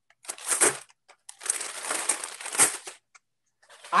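A brown paper bag crumpled and twisted by hand, crackling in two bursts: a short one, then a longer one of about a second and a half.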